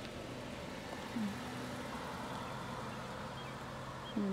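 A steady low motor hum over outdoor background noise, with a short low tone about a second in.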